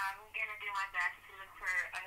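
Speech only: a voice talking over a telephone line, thin and narrow in sound.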